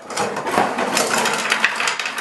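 3D-printed plastic threaded-cap prototypes pouring out of a cardboard box onto a workbench, a dense clatter of many small knocks as they tumble and land.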